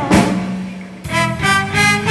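Live band music in a blues ballad: a drum hit and a held bass note fade over the first second. Then the horn section of saxophone, clarinet and trombone comes in with three short chords.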